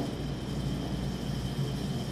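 Steady low background hum of a room, with a faint thin high whine and no distinct events.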